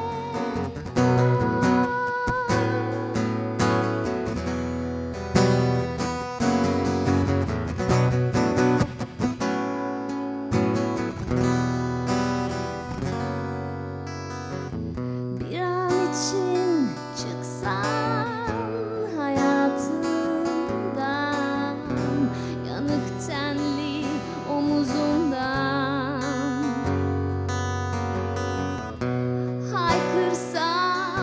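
Acoustic steel-string guitar strummed in chords as an instrumental passage; about halfway through, a woman's voice comes in singing a melody with vibrato over the guitar.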